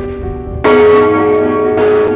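A large church bell hung in a wooden belfry, swung by hand, its clapper striking twice about a second apart. Each stroke rings on in a long, many-toned sound.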